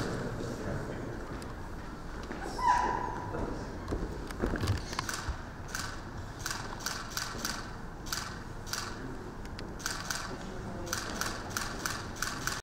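Camera shutters clicking in quick runs, with low voices murmuring in a large hall.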